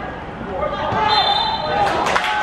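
Players' voices shouting on a football pitch, growing louder about half a second in, with a short high referee's whistle blast about a second in, signalling a foul.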